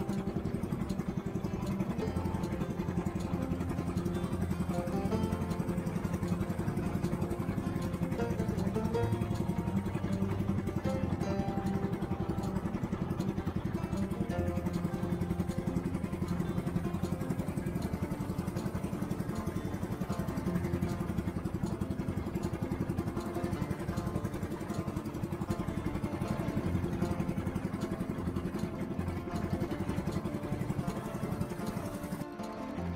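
Small fishing boat's engine running steadily while the boat is under way, mixed with background music with plucked guitar.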